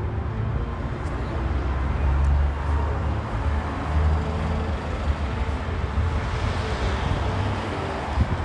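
City street traffic: a steady low rumble of passing cars, with a hiss from tyres building in the second half.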